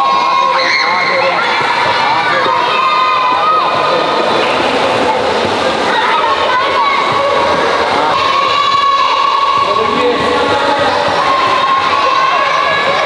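Many children shouting and calling out at once, a steady din of voices in an indoor swimming pool hall, with water splashing from their kicking.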